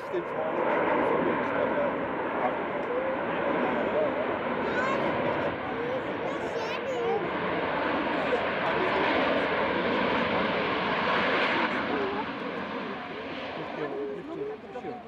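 Ryanair Boeing 737's twin jet engines running loud and steady as the airliner rolls down the runway after landing. The noise swells about half a second in and eases off near the end.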